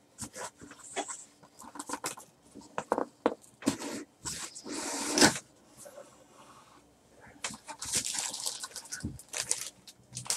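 A cardboard box opened by hand: short scrapes, knocks and rustles from the flaps and lid, then rustling plastic as the wrapped jersey inside is handled, with a longer rustle about five seconds in.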